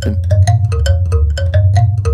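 A Schlagwerk marimbula, a wooden box with plucked metal tongues, played in a steady rhythmic pattern of low plucked notes, about four a second.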